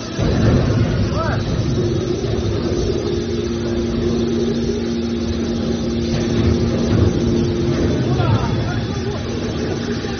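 Hydraulic power unit of a large scrap metal baler running under load as its cylinders swing the press lid shut: a steady mechanical rumble with a two-tone hum that comes in about two seconds in and fades near the end.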